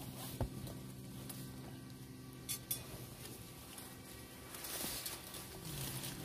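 Faint rustling of leaves with a few soft clicks, as hands work among trellised garden vines.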